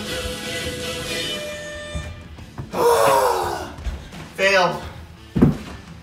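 Background music stops about two seconds in. Then a man gives two loud wordless cries, falling in pitch, and a heavy thump follows near the end as a body drops onto a carpeted floor.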